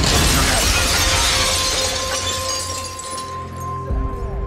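A large pane of window glass shattering all at once, a loud burst of breaking glass that dies away over a few seconds, over a dramatic music score.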